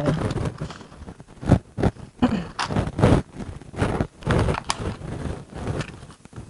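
Short, irregular rustles and scrapes of someone handling materials out of view, a few of them louder than the rest.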